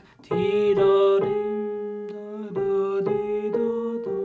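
Piano played slowly: single notes struck one after another over held chords that ring on, starting just after a brief pause, with a lull around the middle before a few more notes are struck.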